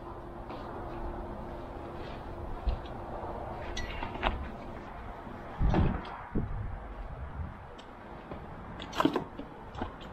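Scattered knocks and clicks of gear being handled on a plastic kayak deck, the loudest a dull thump about six seconds in and a sharp click near the end, over a faint steady hum in the first few seconds.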